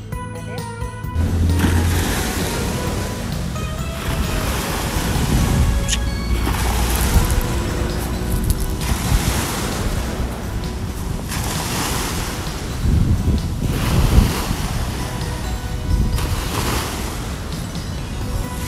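Small bay waves washing onto the shore in surges every two to three seconds, with wind rumbling on the microphone. Soft background music plays underneath.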